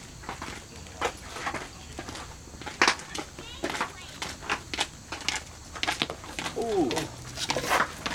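Indistinct voices at a baseball field, a falling call or shout about six and a half seconds in, mixed with scattered short sharp knocks or claps, the loudest near three seconds in.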